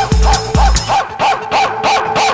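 Electronic dance track: a pounding kick drum about two and a half beats a second over a run of short, rapid chirping synth stabs; about halfway through the kick drops out, leaving the stabs on their own in a breakdown.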